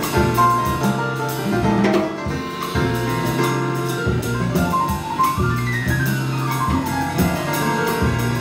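Live jazz trio playing: Rhodes electric piano, upright bass and a drum kit played with sticks, with steady cymbal and drum strokes. In the second half a quick run of notes falls steadily in pitch.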